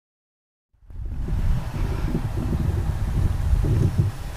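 Silent for the first moment, then about a second in the 2003 Nissan 350Z's 3.5-litre V6 exhaust comes in close to the microphone: a loud, uneven low rumble with a rushing noise like wind on the mic. The engine is running while it burns off a Seafoam treatment, smoking out the tailpipes.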